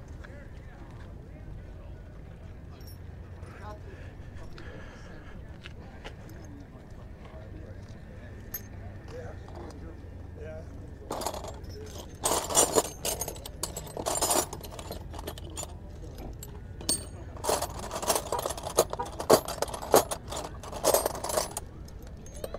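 A heap of loose steel combination wrenches clinking and jangling as a hand rummages through them, in clusters of sharp metal clinks during the second half.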